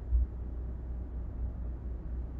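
Steady low rumble of road and engine noise inside a moving car's cabin, with a brief thump right at the start.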